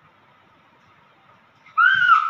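Faint room tone, then near the end a sudden loud, high-pitched squeal from a young girl, one clear note that rises a little and falls.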